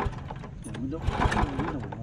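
Small single-cylinder petrol engine on a two-wheel walking tractor being pull-started by its recoil rope: two rough pulls with quick low thumps as it turns over, about a second apart. It does not catch and run, a sign that the engine is failing to start.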